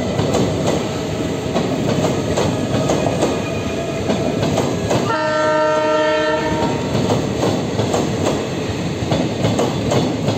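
Passenger train coaches rolling past, their wheels clacking over rail joints in a steady run of clicks. About five seconds in, a train horn sounds one steady blast lasting about a second and a half.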